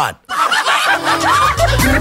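Radio station jingle: recorded laughter over music, after a brief break at the start, with a deep bass beat coming in about halfway through.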